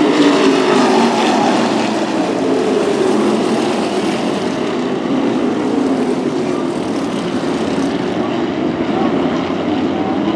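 A field of modified race cars' V8 engines running hard together, their pitch sliding down as cars pass by.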